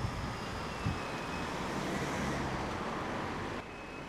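Street ambience: steady road-traffic noise with a low vehicle engine hum, falling away a little just before the end.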